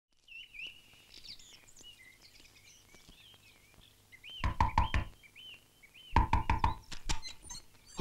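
Knuckles knocking on a wooden door in two bouts: about four quick raps, then after a short pause a longer run of six or seven raps. Faint bird chirps are heard before the knocking.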